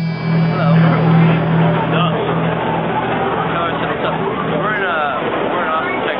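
Voices of a street crowd chattering, under a steady low hum that fades out about four and a half seconds in.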